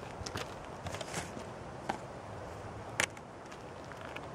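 Faint steady background hiss with a few scattered small clicks, the sharpest about three seconds in.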